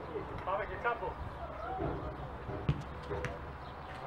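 Faint voices of footballers calling out on a small outdoor pitch, with two sharp knocks in the second half.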